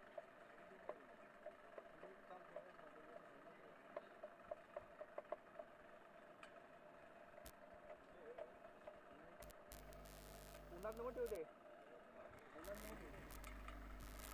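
Near silence: faint distant voices on the open ground, with a low steady hum coming in during the last few seconds.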